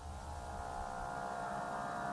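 A steady droning hum: several held tones over a low rumble, swelling slightly in level.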